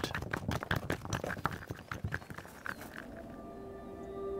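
Grizzly bear digging at stony ground: a dense, irregular run of clicks and scrapes that fades out about three seconds in, when steady sustained music tones come in.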